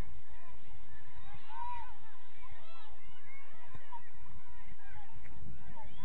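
Geese honking, many short calls overlapping one another, over a low rumble.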